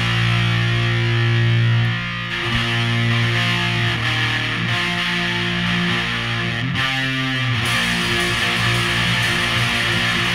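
Early-1980s UK Oi! punk recording playing an instrumental passage: distorted electric guitar chords ring out over the band, with no vocals.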